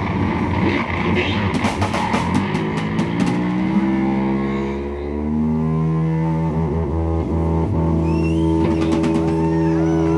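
Live rock band playing electric guitar and drum kit, with cymbal hits in the first few seconds. About halfway through, the playing drops to a long held chord that rings on.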